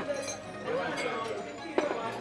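Spoons clinking against porcelain rice bowls, with one sharp clink near the end, over background voices.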